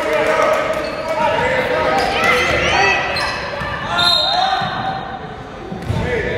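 Basketball being dribbled on a hardwood gym floor during play, the bounces echoing in a large hall, over the voices of players and spectators.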